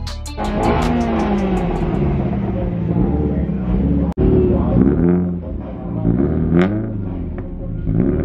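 Subaru WRX STI's turbocharged flat-four engine revving, its pitch rising and falling several times, with a sharp click about four seconds in.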